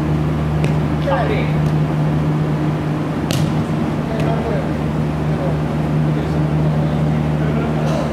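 A steady low hum fills the indoor futsal hall. A short shout from a player comes about a second in, and a futsal ball is kicked once, a sharp thud, a little over three seconds in.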